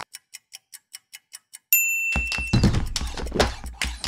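Dial kitchen timer ticking evenly, about five ticks a second, then a single short bell ding. About halfway through, a loud percussive backing track built from kitchen-utensil sounds comes in.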